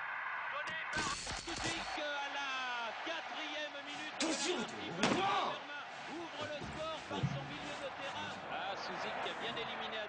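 A football match on a television, with excited voices over crowd noise. There is a loud, dense burst of noise about a second in, and a few sharp knocks a little before the middle.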